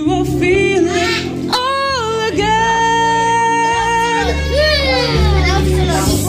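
A man singing a slow ballad into a handheld microphone over a backing track, holding long notes between lines of the song.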